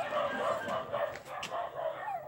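Doodle puppies making small whining and yipping calls, short and wavering, with a few faint clicks mixed in.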